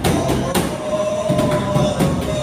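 A bedug, a large Indonesian mosque barrel drum with a hide head, beaten by hand with wooden sticks in a loose, irregular rhythm of heavy strikes. Steady held tones run underneath.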